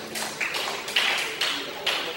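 Handheld karaoke microphone being handled and set down: four irregular knocks with rubbing noise between them, heard through the PA.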